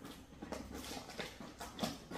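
Quiet stirring of babies being held in blankets: a few faint soft clicks and rustles, with small infant noises.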